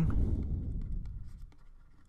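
A stylus scratching and tapping on a pen tablet as a word is handwritten, in short faint strokes. A low rumble fades out over the first second and a half.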